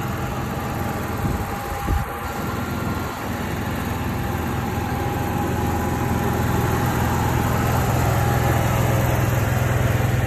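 An engine running steadily at idle with a constant hum, growing gradually louder toward the end, with a couple of brief knocks about two seconds in.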